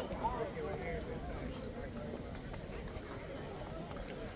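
Indistinct talk of nearby spectators, voices chattering in the background, clearest in the first second and a half.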